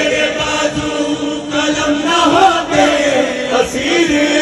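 Men's voices chanting a noha, a Shia lament, together through microphones, with long held notes.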